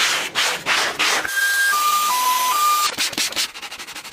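A small detailing brush scrubbing foamy cleaner over a car floor mat and interior trim in quick rasping strokes. Around the middle, a short run of four steady electronic beeps, falling then rising in pitch, plays over a hiss.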